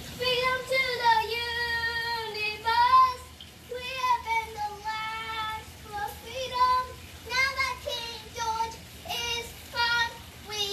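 A young girl singing unaccompanied in a high voice, holding long notes in short phrases with brief pauses between them.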